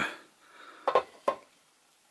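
Two short, sharp metallic clicks about half a second apart, from the steel parts of a disassembled homemade pistol-shaped lighter being handled.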